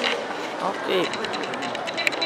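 Speech: a voice calls out "No!" about a second in, over the steady background noise of a busy hall.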